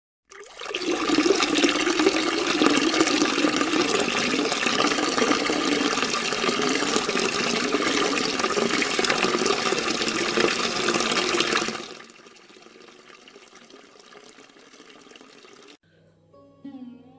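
Water pouring in a steady stream into a glass tumbler as it fills. The pour cuts off about three quarters of the way through.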